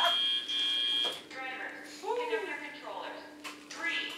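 Electronic match buzzer from the FTC field's scoring system, a steady high-pitched tone that cuts off about a second in. It is typical of the end of the autonomous period. A quieter steady low hum and faint voices follow.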